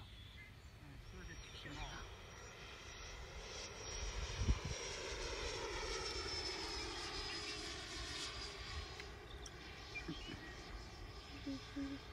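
Electric ducted-fan jet of an RC F-16 whining as it passes overhead, louder in the middle of the pass, its pitch sliding slowly down. A single thump about four and a half seconds in.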